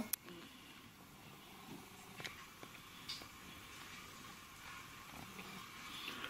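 Faint playback through a Nikon compact camera's small speaker of a video of a train going by close, with a few soft clicks.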